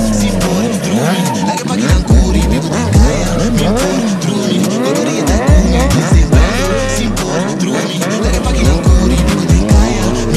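Sport motorcycle engines revving hard while the bikes drift, the engine pitch rising and falling again and again, with rear tyres squealing on the asphalt. Music with a heavy bass runs underneath.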